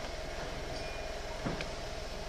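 Steady hiss and low hum from an old home-video recording, with a faint steady tone and a couple of faint knocks about one and a half seconds in.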